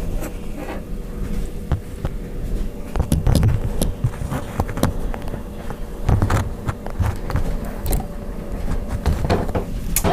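Handling noise from a phone held close while filming: irregular knocks, rubs and low thumps as fingers and movement brush the microphone, heaviest about three and six seconds in, over a faint steady hum.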